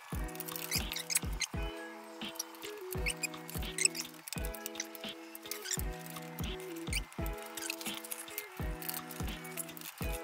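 Background music with a steady drum beat and sustained chords.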